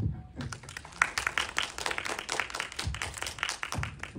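Audience applauding: a dense, even patter of many hands clapping that starts about half a second in and stops just before the end.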